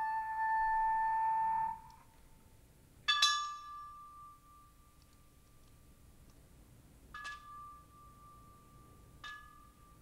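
A homemade wind instrument with coiled clear tubing holds one wavering note that stops about two seconds in. Then an object is struck three times, each strike leaving a single bell-like tone that rings and slowly fades.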